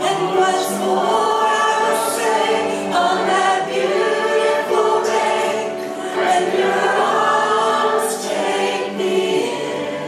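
A worship team singing a slow gospel song in several voices together, led by women's voices, with acoustic guitar accompaniment.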